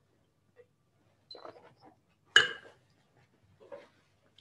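A person tasting red wine, sipping and drawing air through it in the mouth: soft slurping sounds, with one sharper, louder slurp a little past halfway.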